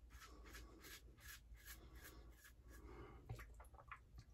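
Faint, rhythmic swishing of a shaving brush working lather on the face, about three strokes a second, giving way to a few irregular rustles and clicks near the end.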